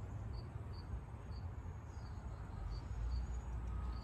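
Insect chirping outdoors: short, high-pitched chirps repeating about twice a second over a low, steady rumble.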